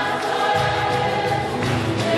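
Gospel choir singing together over instrumental accompaniment with a steady, pulsing bass.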